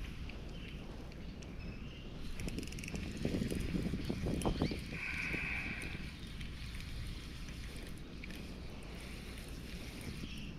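Outdoor noise on a fishing kayak drifting on a lake: a steady low rush of wind and water. A few soft knocks and splashes come about three to five seconds in, and a brief higher-pitched sound follows just after.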